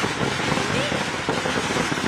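Firecrackers going off in a rapid, continuous crackle of pops, mixed with a crowd shouting.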